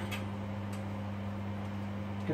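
Steady low electrical hum from a kitchen appliance, with two or three faint ticks.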